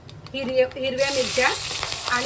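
Chopped green chillies hitting hot oil and cumin seeds in a kadhai: a loud, steady sizzle bursts up about halfway through and carries on.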